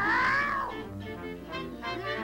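Cartoon cat's wavering yowl, which trails off under a second in, over background music.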